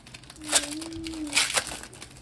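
Foil booster-pack wrapper being torn open and crinkled by hand, with two loud rips about half a second and a second and a half in; the foil is thick and hard to tear.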